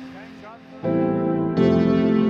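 Background music: a quiet stretch, then a sustained chord comes in just under a second in, and a louder, fuller chord follows near the middle and holds.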